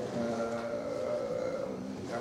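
A man's voice holding a long, level hesitation sound ("э-э") at a steady pitch for about two seconds, a filler while he searches for a word.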